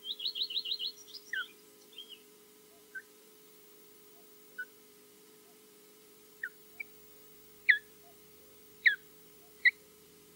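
Osprey alarm calls: a rapid run of about seven high, whistled chirps in the first second, then single sharp, downward-sliding whistles every second or so, the loudest near the end. The nesting osprey is calling in defence of the nest against another osprey flying over.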